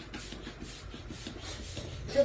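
Cloth rubbing and rustling in quick, uneven strokes as fabric table skirting is handled and smoothed.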